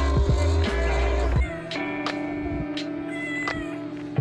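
Background music, with the low motor hum of a digital vinyl cutting machine under it for about the first second and a half. After it stops, a cat meows briefly over the music.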